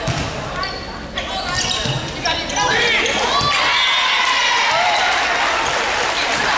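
Indoor volleyball rally in a gym: several sharp ball hits with short high squeaks, then from about three seconds in, loud shouting and cheering from players and spectators that carries on to the end.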